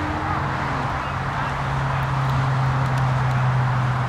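A steady low hum, like an engine running, over outdoor background noise.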